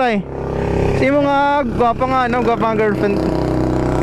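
Voices talking and calling out over the steady low rumble of a motorcycle engine.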